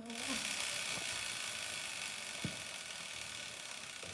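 Motorcycle rear wheel spun by hand on its stand, a steady whir of the wheel and chain that slowly fades as it coasts down, with one faint tick about halfway through.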